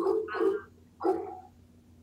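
A dog making a few short vocal sounds, with a woman's brief "uh" about a second in.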